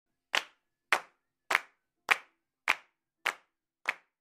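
A single pair of hands clapping a steady beat: seven sharp claps, just under two a second, with dead silence between them.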